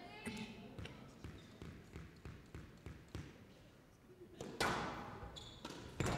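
Squash rally: a run of sharp knocks as the ball is struck by the rackets and hits the court walls, at uneven intervals. A louder rush of noise comes about four and a half seconds in.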